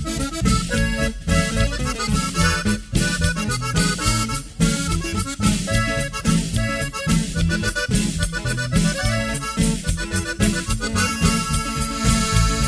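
Norteño band playing an instrumental passage: a button accordion carries the melody over a bass line and drum kit beat.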